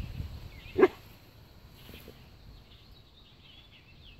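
Faint songbirds chirping in the background, after one short, loud shout about a second in.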